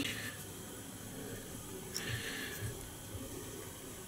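Quiet room with faint handling sounds from fly tying: a soft rustle at the start and again about two seconds in, with a couple of faint taps.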